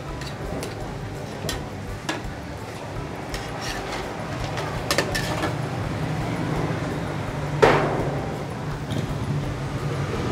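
A metal spatula scraping and clinking against a wok as crab pieces are stir-fried over high heat, above a steady frying hiss. Scattered sharp clinks stand out, the loudest about three-quarters of the way through.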